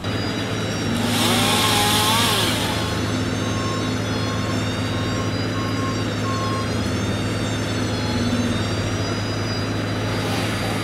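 Bucket truck engines running with a steady low hum. A burst of hiss comes about a second in and lasts about a second and a half, and a thin high whine wavers in pitch throughout.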